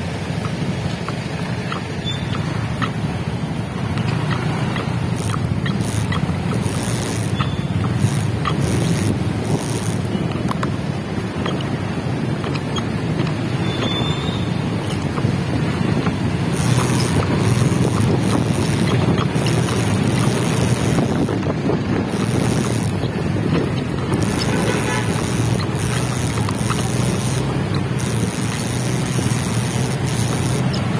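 A motorcycle engine running steadily at low speed in stop-and-go traffic, with wind noise on the microphone and the sound of surrounding road traffic.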